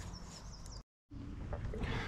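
Faint outdoor background with a few short, high-pitched bird chirps, broken about a second in by a brief dropout to dead silence.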